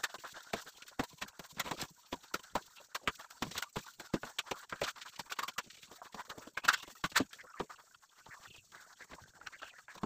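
Hand plastering: a plastering blade clicking and scraping against the wall as putty is spread, in a quick irregular run of sharp ticks. Two louder clacks come close together about two-thirds of the way through, and the ticks thin out near the end.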